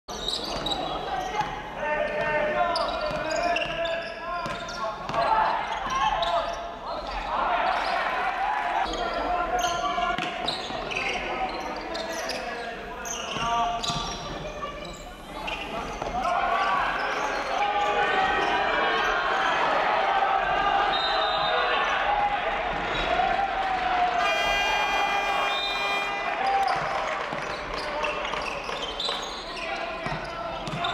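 Basketball game sounds in a large gymnasium: a ball dribbled and bounced on the hardwood court, with voices around the court, all echoing in the hall.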